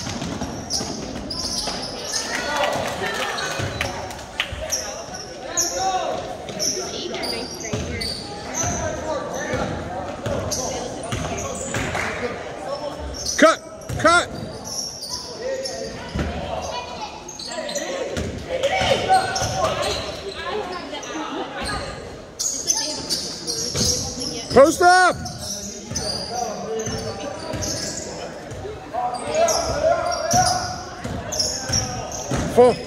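Basketball game on a hardwood gym floor: a ball being dribbled, with players' footsteps and a few short, sharp sneaker squeaks, about halfway through and again near the end, echoing in the hall.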